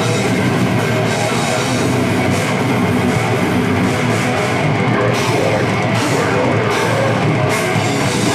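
Live heavy metal band playing loudly: distorted electric guitars over a drum kit, with cymbal crashes coming several times in the second half.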